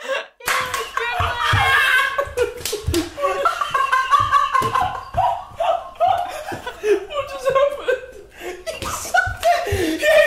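Young men laughing hard and shouting, starting about half a second in, with several sharp slaps among the laughter.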